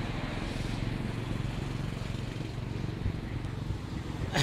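Steady low rumble of outdoor road background noise, with no distinct events.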